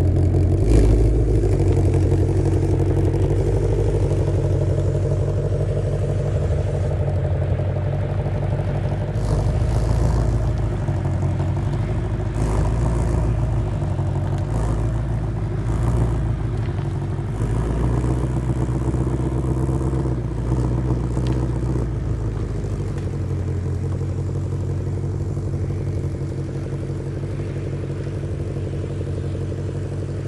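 A 2020 Shelby GT500's supercharged 5.2-litre V8 running at low revs, with small rises and falls in pitch as the car creeps up a ramp into an enclosed trailer. There are a few clattering knocks along the way, and the engine grows quieter near the end as the car moves inside.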